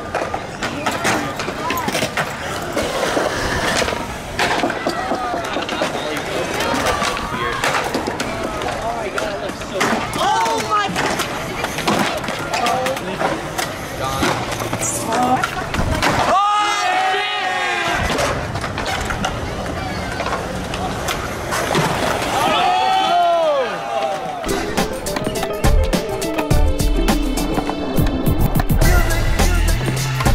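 Skateboard wheels rolling on concrete, with sharp clacks of boards being popped and landed. Music with a heavy bass beat comes in near the end.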